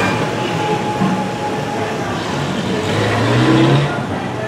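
Street traffic: a small car drives slowly past close by, engine and tyres growing louder to a peak near the end as it passes.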